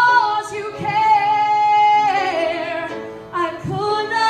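A woman singing a slow worship song solo, holding one long note with vibrato near the middle, then moving lower.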